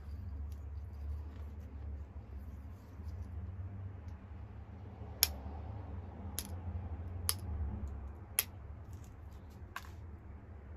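Pressure flaking the edge of a Flint Ridge flint point: five sharp, high clicks about a second apart in the second half as small flakes snap off under the pressure flaker, over a low steady hum.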